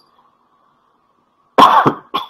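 A quiet pause with a faint steady hum, then a man coughs once, sharply, about one and a half seconds in.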